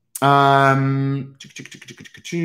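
A man's drawn-out hummed "mmm" filler, then a quick run of computer keyboard clicks in the last half second or so.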